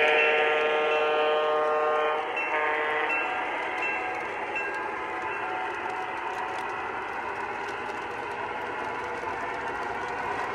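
The sound system of an MTH Proto-Sound 2 Union Pacific propane turbine model locomotive sounds its horn: one long blast, then a short one about two and a half seconds in. After that comes the steady rumble of the train's cars rolling along the track past the microphone.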